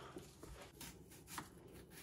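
Near silence: faint room tone with a few weak clicks.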